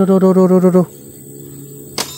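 A man's voice speaking a few short syllables, then about a second of quieter background with a faint steady hum.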